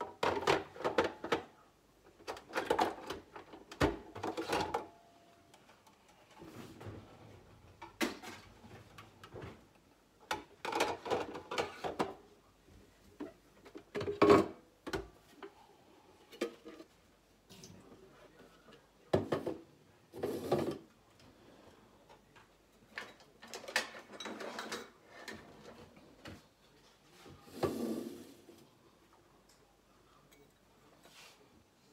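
Plastic parts of a Nespresso Lattissima coffee machine being handled: the drip tray sliding out, and the clear water tank lifted off and set down on the counter, in a string of separate clicks, knocks and rattles.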